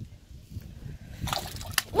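Peacock bass striking a bait fish at the water's surface: a short splash about a second and a half in, ending in a sharp slap.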